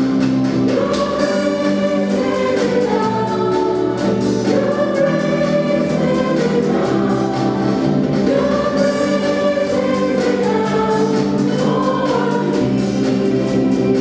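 Church choir and a lead singer on microphone singing a gospel worship song in long, sustained phrases, backed by keyboard and a small band.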